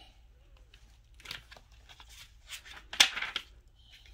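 Paper rustling as a picture book is handled and its page turned, with a few soft rustles and one sharper, louder rustle about three seconds in.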